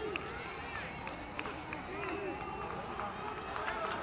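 Faint voices of players and staff calling out on the pitch of an empty football stadium, heard as pitch-side sound under a pause in the commentary.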